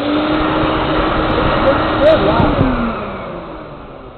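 Vacuum cleaner motor running and blowing a rush of air into a homemade paper-bag airbag to deploy it. About two and a half seconds in, the motor's hum sinks in pitch and the noise dies away as it winds down.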